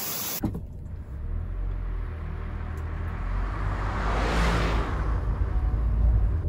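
Low, steady rumble of a car driving slowly, heard from inside the cabin. A broad rush of noise swells up and fades away again about four to five seconds in.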